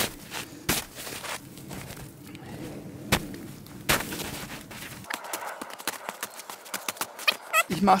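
Boot kicking into packed snow to dig a hollow down to the ground: a few irregular crunching thuds in the first four seconds, then lighter, rapid crunching and scraping of snow.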